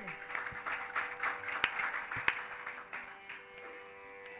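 Carnatic concert percussion, mridangam and ghatam, playing a soft, sparse passage of light scattered strokes with a few clearer ones, over a steady drone. It fades near the end.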